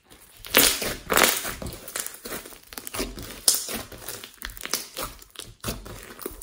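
Large glossy slime mixed with foam beads being pressed and stretched by hand, giving an irregular run of wet crackles and pops, loudest about half a second in.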